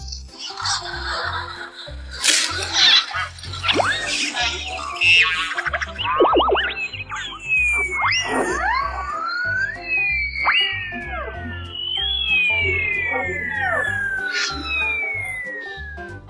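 Cartoon battle sound effects over background music: a few hits early on, springy boing-like pitch swoops, then a series of long falling whistles through the second half.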